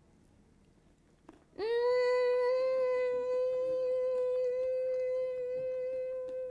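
A woman's long closed-mouth "mmm" hum of enjoyment as she tastes a spoonful of food, held on one steady pitch. It begins about a second and a half in, after near quiet.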